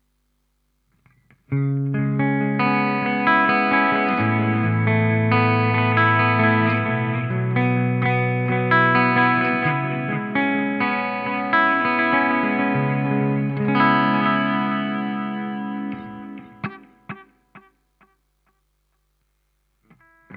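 Electric guitar playing sustained, ringing chords and notes through an effects pedal rig. It starts about a second and a half in, then dies away with a few short plucked notes near the end.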